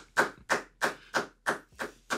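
A steady run of sharp, short strikes, about three a second, evenly spaced like rhythmic clapping or tapping.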